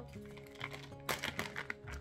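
A clear plastic bag of wax melt cubes crinkling as it is handled and raised, a quick run of crackles about a second in, over soft background music.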